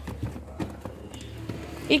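Faint light knocks and clicks of plastic food containers being slid and handled on a refrigerator shelf.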